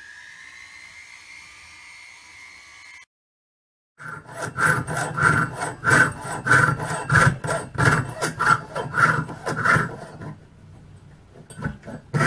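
Jeweller's saw cutting sheet metal over a wooden bench pin, in regular back-and-forth strokes about two a second that die away near the end. A faint steady high hum comes before the sawing starts.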